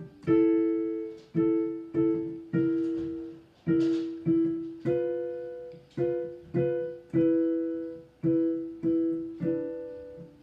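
Digital piano played slowly, with two-note chords struck one after another about every half to one second, each left to ring and fade. The pair of notes steps up in pitch about five seconds in.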